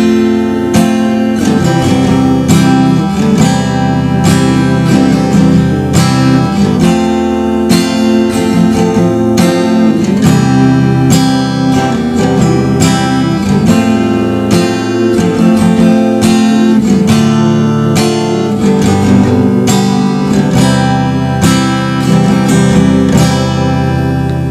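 Acoustic guitar strummed in open chords, moving through a simple C–F–C–F–Dm–G–C progression with a steady repeating strum.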